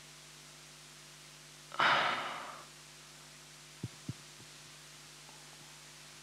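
A breathy sigh into a close headset microphone about two seconds in, fading over most of a second, with two soft clicks shortly after the middle, over a faint steady electrical hum.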